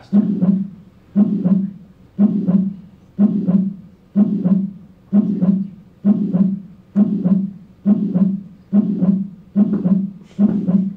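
Simulated heartbeat from a heart-physiology animation: a steady lub-dub about once a second that quickens toward the end, the heart rate rising under increased sympathetic drive.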